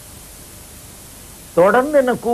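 Steady hiss in a pause in speech, then a man starts talking about one and a half seconds in.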